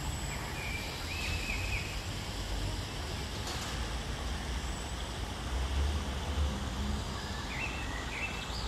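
Outdoor ambience: a steady low rumble, with a few short bird calls about a second in and again near the end.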